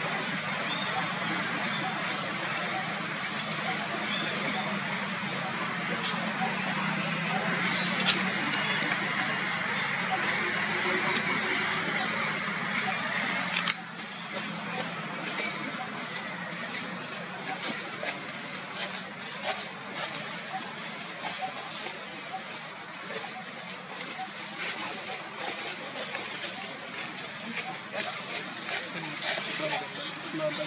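Steady outdoor background noise with indistinct voices. About halfway through it drops suddenly to a quieter level, after which scattered light clicks are heard.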